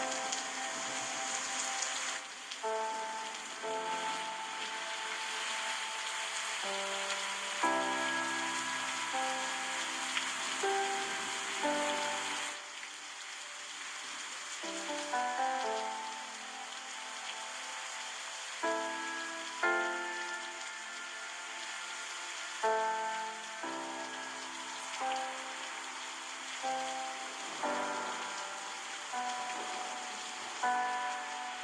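A slow solo piano piece, single notes and chords struck about once a second and left to ring, over a steady rushing hiss of flowing water that thins out about twelve seconds in.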